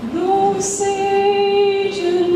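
A female voice singing a hymn, entering at once on one long held note, with a short 's' sound about two-thirds of a second in.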